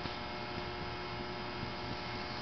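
Steady electrical mains hum with a faint hiss underneath, unchanging, with nothing else happening.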